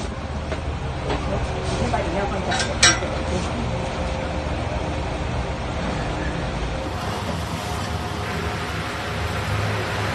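Steady low rumble with a single sharp metallic clink about three seconds in, from the metal fittings of a traditional drum-type rice-puffing machine being readied with its catch-bag.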